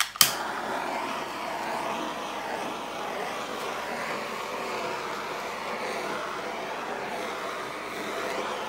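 Handheld butane torch lit with a click just after the start, then burning with a steady hiss as its flame is passed over wet acrylic paint to pop the air bubbles.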